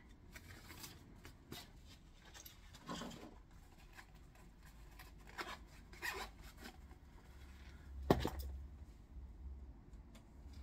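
Faint handling noise: scattered small clicks, taps and rustles from something being handled by hand, with a louder knock about eight seconds in.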